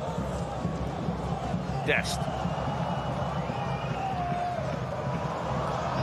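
Steady murmur of a football stadium crowd under a commentator's voice, with a faint high whistle held for a couple of seconds near the middle.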